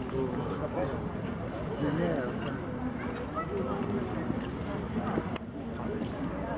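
Indistinct talk of people close by, over the low running of a Jelcz 'ogórek' bus's diesel engine as the bus moves away.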